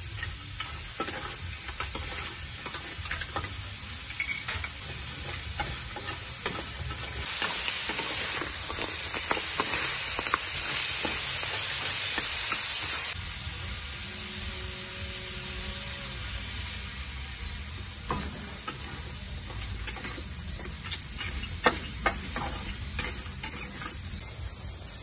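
Crabs stir-frying in a steel wok: a metal spatula scrapes and clacks against the pan over a steady sizzle. The sizzle turns louder and hissier for about six seconds in the middle, and a few sharp clacks come near the end.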